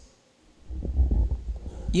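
Microphone handling noise as a hand grips a stage microphone and lifts it off its stand. It is heard as low, irregular rumbling and knocks, starting about half a second in.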